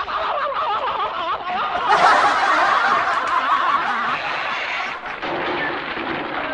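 A crowd of many voices laughing and shouting together, swelling about two seconds in and easing off near the end.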